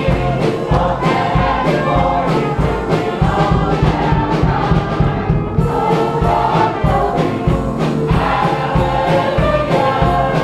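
Church choir singing gospel music over a band, with a steady beat and a bass line.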